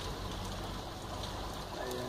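Steady low outdoor background noise with a low hum, and a voice beginning near the end.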